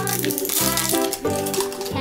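Plastic wrapper being peeled off a Cadbury Gems Surprise ball, many quick clicks and crinkles over background music with steady notes.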